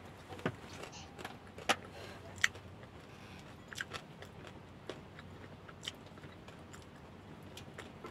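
A person eating fried fish with fingers and chopsticks: quiet chewing, with several sharp little clicks scattered through.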